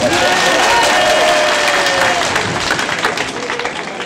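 A crowd applauding, the clapping mixed with a few voices and dying down over the last second or so.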